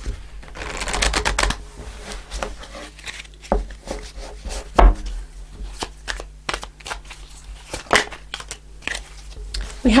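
A deck of tarot cards being shuffled by hand: a quick run of rapid card flicks about a second in, then scattered clicks and a few soft knocks as the deck is handled and squared.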